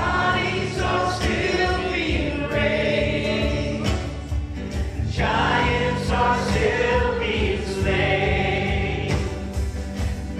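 Live worship band playing a congregational song: several singers sing together at microphones over keyboard, guitars and a steady beat, with a short break between sung phrases about halfway through.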